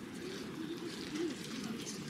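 A group of people walking in through a doorway: faint footsteps and a low, wavering murmur of voices.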